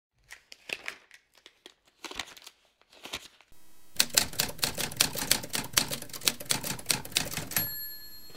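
Typewriter keystroke sound effect: a few scattered key strikes, then rapid typing from about four seconds in. It ends with a short ringing tone near the end, like a typewriter's carriage bell.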